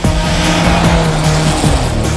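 A rally car's engine revs hard as the car passes, its pitch falling as it goes by, over a hiss of tyres on the snowy road. Music plays underneath.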